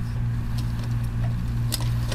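A steady low hum with a few faint, irregular light clicks as fabric is worked into the binder foot at the needle; no even stitching rhythm is heard.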